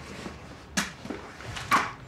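Two short, sharp noises about a second apart, the second louder, over quiet room tone.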